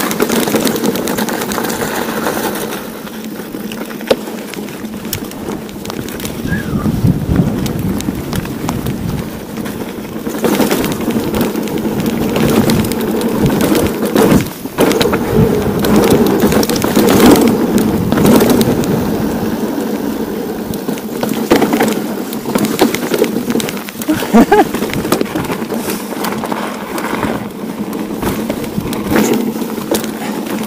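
Steel hardtail mountain bike ridden over a rocky trail. The tyres crunch over stones, with frequent knocks and rattles from the bike, and wind buffets the handlebar camera's microphone.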